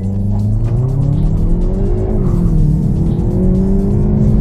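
Hyundai i30 N's 2.0-litre turbocharged four-cylinder engine accelerating at full throttle from a launch-control start, heard from inside the cabin. The revs climb, dip at an upshift from first to second gear of the dual-clutch automatic about two seconds in, then climb again.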